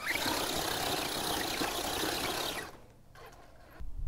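Radio-controlled Axial Capra rock crawler driving over sand and rock: its small brushless electric motor and drivetrain running with the tyres scrabbling through sand, cutting off suddenly about two and a half seconds in.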